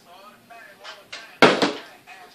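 A partly filled plastic water bottle hits a wooden table top with a sharp knock and a quick second knock, as a flipped bottle lands on its side, about a second and a half in.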